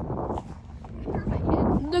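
Low, shapeless rumbling noise on a phone microphone, then near the end a person's long, drawn-out voice starting the word "look".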